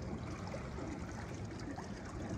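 Gentle, steady water sloshing and trickling in a pool as a swimmer leans back into a float.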